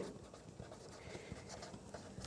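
Faint strokes and light taps of a pen writing on paper.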